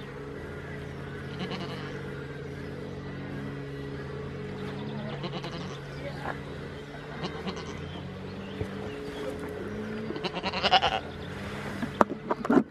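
Goat bleating in short calls, the loudest near the end, over a steady low hum.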